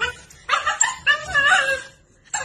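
A dog whining and yipping in a run of high cries that waver up and down in pitch, starting about half a second in and stopping just before the end.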